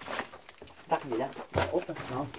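Voices in a small rock cave: a brief murmur, then a surprised 'Ủa?' near the end. Short knocks and scuffs come from people clambering over the rock.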